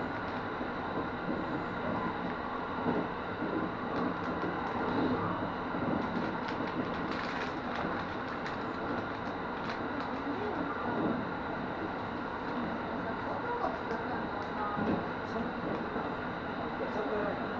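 Kintetsu 23000 series Ise-Shima Liner limited express running steadily at speed, heard from inside the car: a continuous rumble of wheels and running gear with scattered light clicks.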